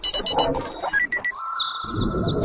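Synthesized sci-fi interface sound effects for a hand-scanner animation. Short electronic beeps come first, then a steady scanning tone sets in past the middle, with several quick falling chirps above it.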